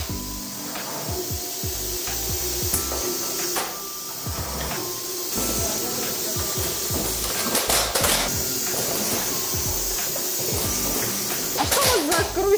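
Background music over the steady hiss of an automatic pad-printing machine inking glass Christmas balls, with a few short air hisses from its pneumatics.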